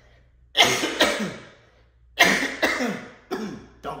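A man coughing hard in two fits, about half a second and about two seconds in, each made of several coughs, with a shorter cough near the end: he is clearing something that went down the wrong way.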